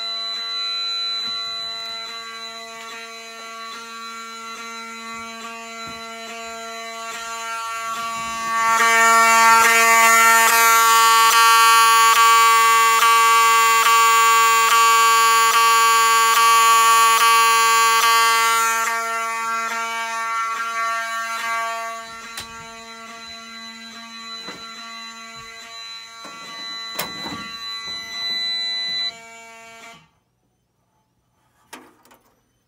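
Wheelock fire alarm horn sounding a continuous buzzing tone with fine regular ticking, set off by a manual pull station on a Fire-Lite MS-9600 alarm panel. It is loudest through the middle stretch and cuts off suddenly at the very end as the alarm is silenced.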